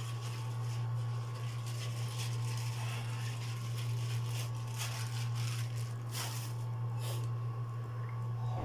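A steady low hum from a running machine, unchanging throughout, with a few faint clicks and rustles of things being handled.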